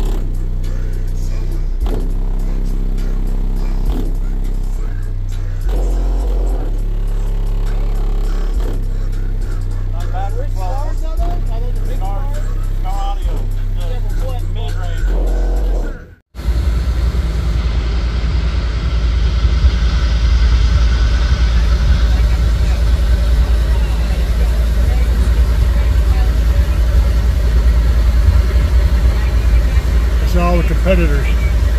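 Bass-heavy music played loud through a Chevy Silverado's Kicker subwoofer system, heard from inside the cab: deep bass notes step in pitch every second or so, with a vocal line partway through. The sound cuts out briefly about halfway, then a denser, steady deep bass rumble follows.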